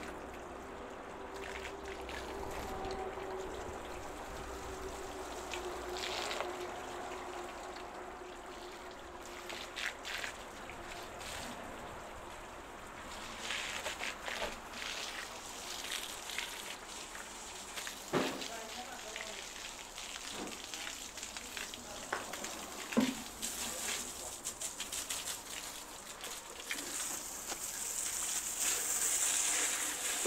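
Water jet from a hand-held hose hissing onto a truck's steel wheel and tyre and splattering on wet pavement. The flow is uneven, surging and dropping on its own, and grows louder near the end, with a few short knocks along the way.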